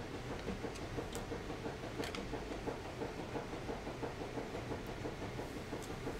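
Steady low room rumble with a few faint light clicks from trading cards and their packaging being handled.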